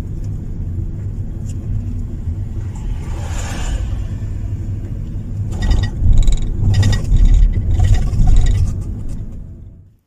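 Car road noise heard from inside the cabin while driving: a steady low rumble of tyres and engine. A few seconds past the middle it grows louder, with knocks and rattles, then fades out near the end.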